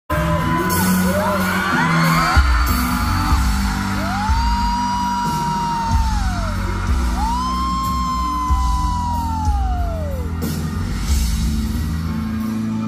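Live pop concert heard from within the audience: a band playing with a heavy bass and drum beat while a male singer sings, and fans screaming over it, with two long high-pitched screams in the middle.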